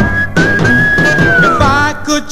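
A 1955 rhythm and blues record with a vocal and orchestra, in a gap between sung lines. One high note is held and slides down near the end, over a steady bass and beat.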